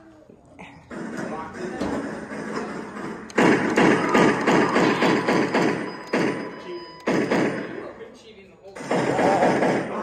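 Indistinct, overlapping voices with thuds and knocks, coming in stretches that stop and start several times.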